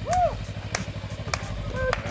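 Sport motorcycle engine running at low speed as it rolls along slowly with a rider and passenger, a steady low rumble of fast even pulses. A short vocal exclamation rises and falls just after the start, and a few sharp clicks sound over it.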